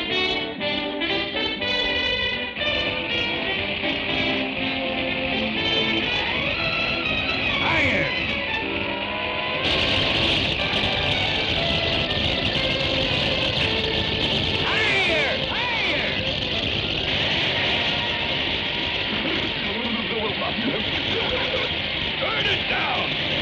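Cartoon orchestral score. About ten seconds in, a steady rushing hiss of a gushing water fountain sets in suddenly under the music and carries on, with sliding whistle-like notes over it.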